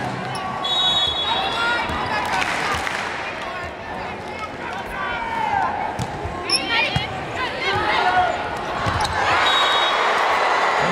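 Volleyball arena crowd noise with scattered shouts. A whistle sounds near the start and again near the end, and sharp hits of the ball ring out during the rally in the second half.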